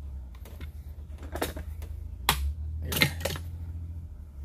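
A few sharp metal clicks and taps as the trigger plate of a Remington Model 11-48 shotgun is worked into the receiver and its pin holes lined up, over a steady low hum.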